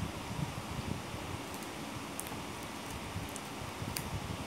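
Crinkling of a foil Pokémon booster pack being handled and opened by hand, with a few short, sharp crackles.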